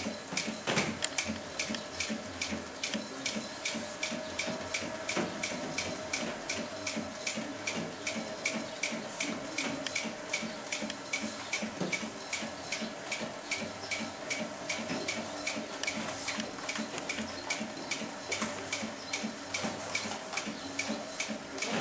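Artisan 5550 industrial sewing machine stitching leather at a slow, even pace, about three stitches a second: a steady ticking over the hum of its motor. It runs slowly because of a speed reducer fitted to the machine.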